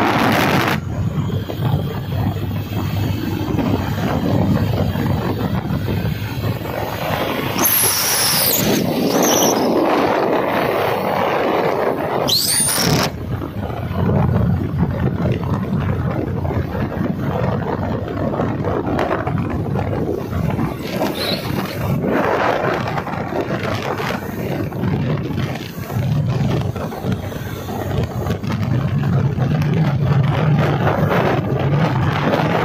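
Wind rushing over the microphone on a moving motorcycle, mixed with engine and road noise. Two brief high squealing glides cut through, about a quarter of the way in and again a few seconds later.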